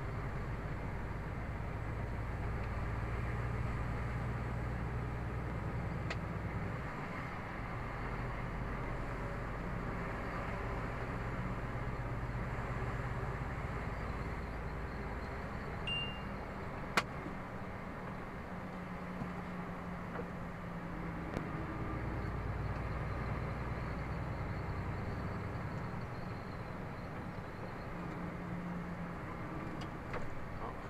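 A car being driven, heard from inside the cabin: steady engine and tyre noise, with the low engine hum changing pitch a few times. A short high beep sounds just past halfway, followed a second later by a sharp click.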